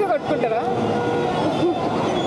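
People talking, with the noise of road traffic running behind.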